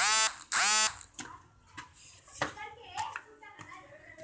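Two loud, shrill vocal cries in quick succession about a second long in all, followed by faint background voices.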